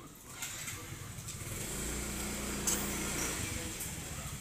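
Motorcycle engine running, a steady low hum that sets in and grows louder about a second and a half in, with a short click near the middle.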